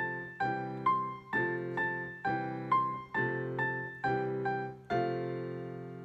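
Digital keyboard in a piano voice playing a simple melody over F and C major chords, with a new note struck about every half second. It ends on a longer held chord that fades away.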